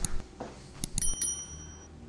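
A click, then a short high bell ding about a second in from a subscribe-button animation's sound effect.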